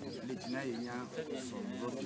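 People's voices talking at a low level, with no other clear sound.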